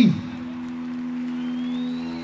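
Live band holding the song's final chord, a steady sustained tone with no decay, just after the last sung note cuts off.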